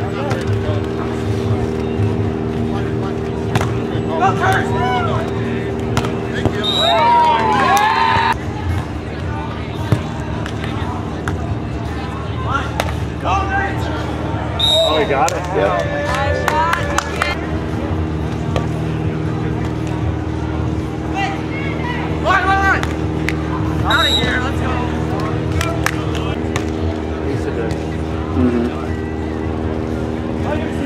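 Beach volleyball court ambience: a steady droning hum with indistinct voices over it at times and a few sharp knocks.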